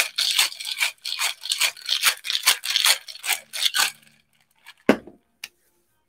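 Ice rattling in a metal cocktail shaker shaken hard in a quick, even rhythm of about four to five shakes a second, stopping about four seconds in. A single thump and a light click follow near the end.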